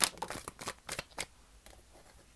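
A tarot deck being shuffled by hand: a quick run of crisp card flicks and slaps, loudest at the start, dying away after about a second and a half.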